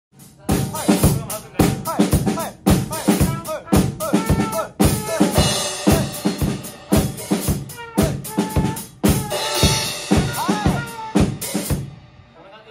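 Canopus acoustic drum kit played solo in busy fills: bass drum, snare and toms struck in quick runs with cymbal crashes, each tom's note dropping in pitch as it rings. The playing stops abruptly near the end.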